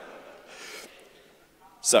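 A faint breathy exhale picked up by a handheld microphone in a pause, then a man says "so" near the end.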